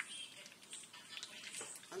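Thick tomato stew simmering in a pot and being stirred with a wooden spoon: faint, irregular soft bubbling and wet stirring sounds.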